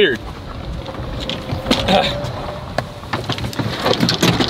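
Golf cart setting off, with a faint whine from its motor about a second and a half in and a few knocks and clatters from the cart and clubs.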